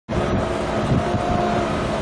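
Steady rumbling wind noise on the camera microphone at an outdoor soccer match, with faint voices from the field and stands.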